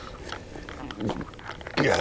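Mostly quiet, with scattered small clicks and short faint voice sounds. Near the end a voice says "Yeah".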